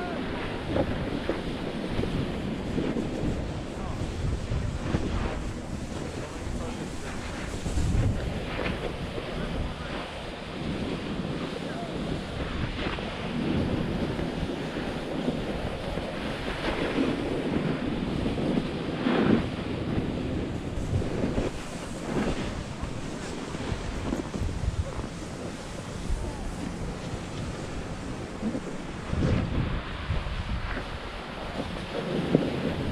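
Wind rushing over an action camera's microphone while riding fast down a snow slope, with the continuous scrape and hiss of edges carving across packed snow.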